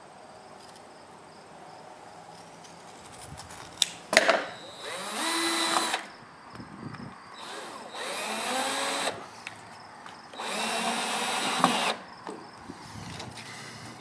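Cordless drill driver driving screws through a fabric garage-door side seal into the door jamb: three separate runs of about a second each, the motor's pitch rising as each one starts. A couple of sharp clicks come just before the first run.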